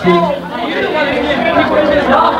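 Several people talking at once: overlapping chatter with no other sound standing out.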